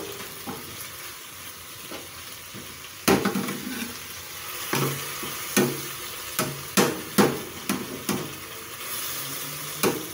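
Pork and scallions sizzling in a frying pan, with a metal spatula scraping and knocking against the pan as it stirs. The loudest knock comes about three seconds in, and a run of irregular knocks follows in the second half.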